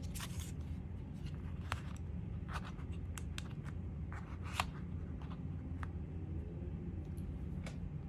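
A small plastic power bank handled in the fingers and set on a tabletop: scattered light plastic clicks and taps, the sharpest a little past the middle, over a steady low room hum.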